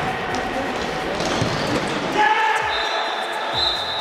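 Futsal game sound in an indoor hall: the ball being kicked and bouncing on the hard court, mixed with players' shouts, all echoing. A long, steady high-pitched tone starts a little past halfway and runs on.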